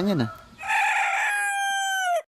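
A rooster crowing once, starting about half a second in: a rough opening, then a long held note that bends down at the very end.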